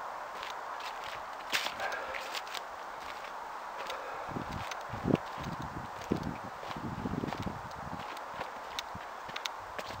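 Footsteps over rough ground strewn with cut wood and debris, irregular and scattered, with a steady background hiss. A run of low bumps on the microphone comes in the middle seconds.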